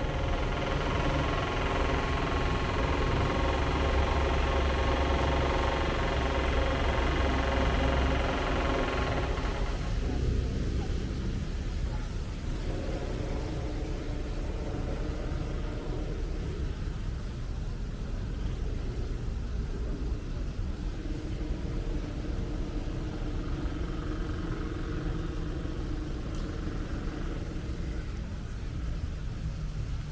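Machinery running with a steady hum, loudest for about the first nine seconds, then dropping away to a fainter hum that carries on.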